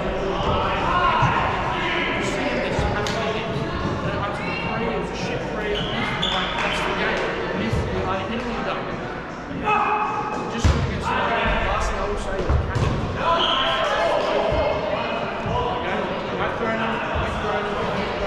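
Dodgeballs being thrown and bouncing on the court in a large echoing sports hall: a scattered string of sharp thuds, over the chatter and calls of players.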